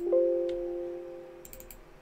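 A computer alert chime: one pitched note with several overtones that starts suddenly and fades away over about a second and a half. A few soft clicks near the end.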